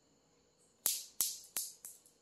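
Four sharp, ringing clacks about a third of a second apart, each fainter than the one before.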